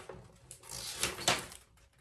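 Printed paper sheets rustling as they are handled, in a few short faint bursts.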